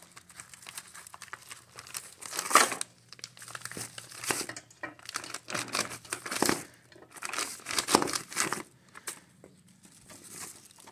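Plastic wrapping crinkling and a small cardboard box being handled as a drill chuck is unpacked, in uneven bursts of rustling.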